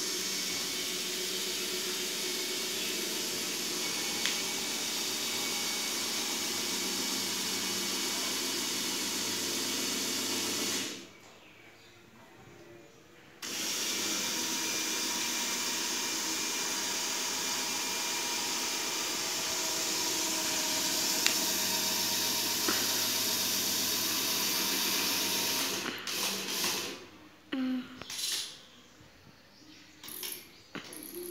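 Small geared DC motors of a model truck and trailer running with a steady whir. They stop for about two seconds a little before the middle, then run again and cut in and out several times near the end.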